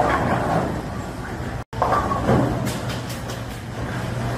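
Bowling alley noise: the low, steady rumble of bowling balls rolling down the lanes. The sound cuts out for an instant about halfway through.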